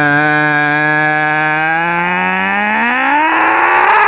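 A person's voice holding one long low note that gets louder, then slides up in pitch and breaks into a rough, strained yell near the end.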